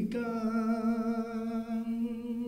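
A man singing solo into a handheld microphone, holding one long steady note with a slight vibrato.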